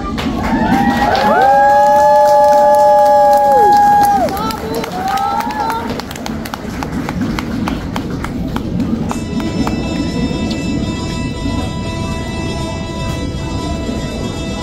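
Show music ending on a held final chord for about four seconds, followed by audience applause and cheering, with dense clapping, as new music starts up again about nine seconds in.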